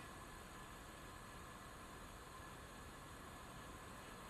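Near silence: a faint steady hiss with a faint hum.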